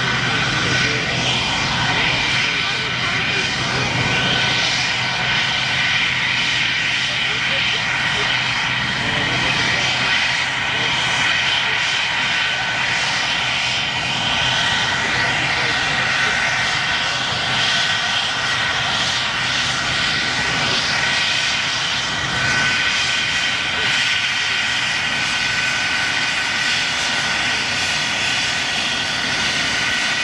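English Electric Lightning's twin Rolls-Royce Avon turbojets running as the jet taxis: a steady, loud rush with several high whining tones held over it.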